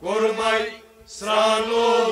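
Male voice singing a Kashmiri Sufi kalam in a chant-like style: two sustained sung phrases, with a brief gap about a second in.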